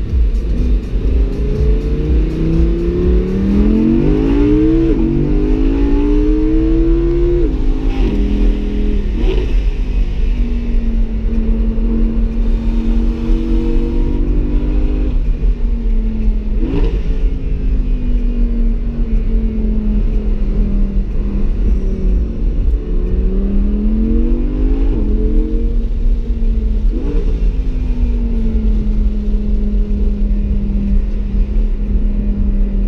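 Audi R8's 5.2-litre V10 heard from inside the cabin under hard acceleration on track. Its pitch climbs and drops sharply at each gear change, several times over. In the middle there is a steadier stretch where the revs slowly fall before it pulls up through the gears again.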